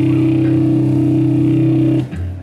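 Final chord of a heavy metal song held on electric bass and guitar, a loud steady low drone with no drums, cutting off suddenly at the end.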